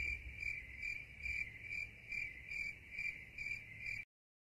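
Crickets-chirping sound effect: a steady high chirp pulsing evenly about twice a second, the stock gag for an awkward silence. It cuts off suddenly at the end.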